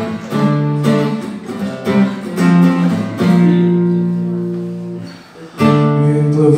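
Acoustic guitar playing strummed chords with no singing. About three seconds in, one chord is left to ring and fades away, then the strumming starts again near the end.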